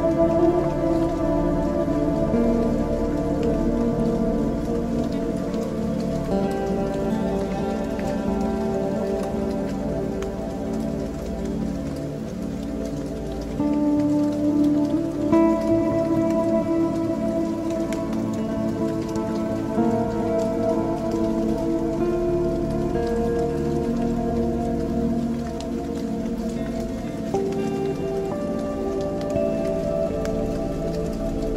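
Ambient electronic music: sustained drone chords that shift to new pitches every few seconds, over a steady rain-like patter.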